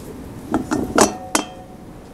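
A metal water bottle being handled on a table: four short metallic clinks with a brief ring, the loudest about halfway through.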